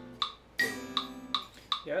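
Electric guitar chord struck about half a second in and left to ring and fade, over a metronome clicking steadily about two and a half times a second.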